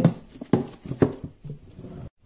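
A few light knocks and clatters, about half a second apart, of a sunscreen spray can and plastic bottles and boxes being set down and shifted inside a drawer.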